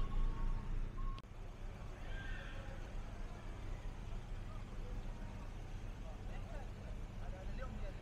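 Street ambience: a low rumble that is louder for the first second and then settles, with faint voices of passers-by.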